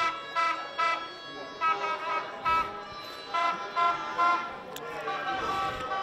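A horn sounding a quick, uneven series of short pitched toots, some held a little longer, with the notes shifting slightly in pitch.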